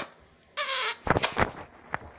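Handling noise from a handheld camera: a sharp knock at the start, a short breathy hiss about half a second in, then a cluster of clicks and bumps.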